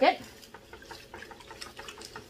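A plastic sieve of wet gravel paydirt being swished in a bucket of water: quiet sloshing with small irregular clicks of gravel.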